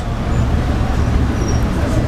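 Steady background noise with a low rumble and hiss, like road traffic.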